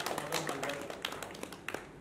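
A few people clapping, the claps irregular and thinning out as the applause dies away, with a last lone clap near the end. A faint voice is heard under the clapping.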